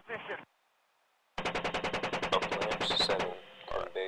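Apache helicopter's 30 mm chain gun firing in rapid bursts: a burst cuts off about half a second in, and after a pause of about a second a second burst of about two seconds follows.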